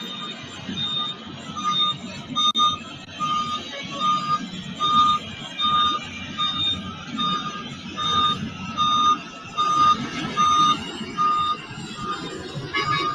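A heavy construction vehicle's reversing alarm beeps steadily, about one and a half beeps a second, over the low rumble of diesel engines at a road-building site.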